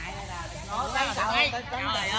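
Voices of people talking and calling out, louder in the second half, over a steady high hiss.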